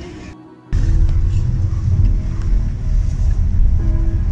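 After a brief drop-out, a car cabin's loud low rumble sets in, with music playing from the car radio.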